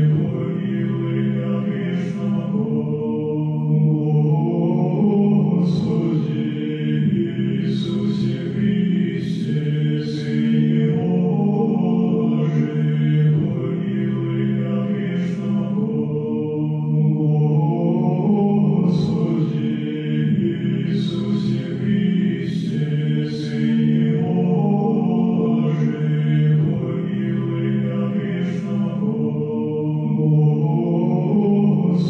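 Background music: slow vocal chant in low voices over a held low note, with the sharp 's' sounds of the sung words coming through every second or two.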